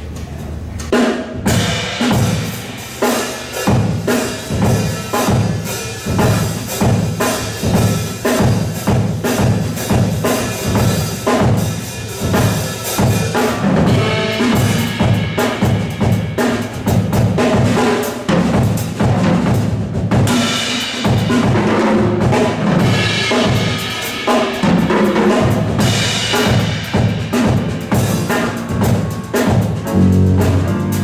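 Live jazz combo starting a number about a second in: a drum kit keeps a steady beat under electric bass, piano, saxophone and violin.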